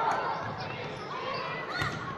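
A basketball bouncing on a hardwood gym floor during a youth game, with a few sharp knocks and sneaker squeaks, and spectators' voices behind.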